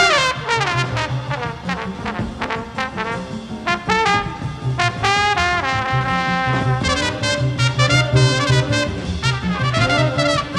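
Big band swing jazz from a 1949 record: the brass section of trumpets and trombones plays held chords and short punched figures over a steady bass line.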